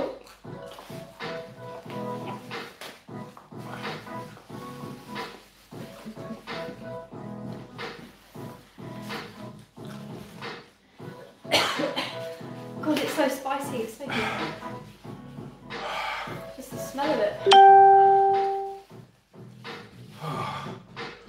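Quiet background music with low voices, then near the end a single loud electronic chime that rings for a little over a second and fades away.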